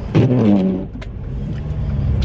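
Car engine and road noise heard from inside the cabin: a brief louder pitched sound in the first second, then a low steady rumble.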